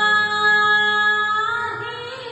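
A woman singing Sikh devotional kirtan (shabad) into a microphone. She holds one long steady note that lifts slightly in pitch near the end and then grows softer.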